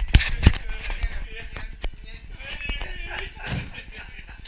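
Two sharp knocks in the first half second as the camera is handled, followed by scattered lighter clicks and a faint voice in the room.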